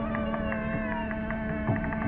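Male Carnatic vocalist holding one long, steady note in raga Tanarupi, with mridangam strokes beneath.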